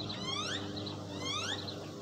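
A bird calling outdoors: two short runs of rising whistled chirps about a second apart, over a steady low hum.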